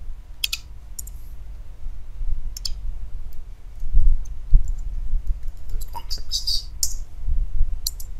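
Computer keyboard keystrokes and mouse clicks while code is typed, a few scattered sharp clicks with a denser run in the second half. They sit over a low steady rumble, with a couple of dull thumps about halfway through that are the loudest sounds.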